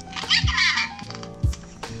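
Pull-string voice box of a Baby Sinclair plush doll playing a short recorded baby voice, like a giggle, starting about a quarter-second in and lasting under a second.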